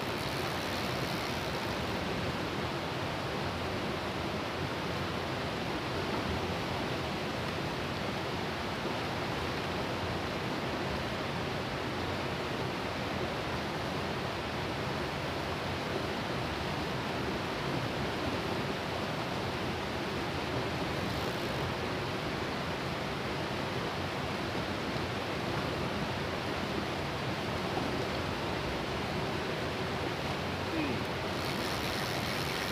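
Fast-flowing river rushing over rocks and small rapids: a steady, even rush of water.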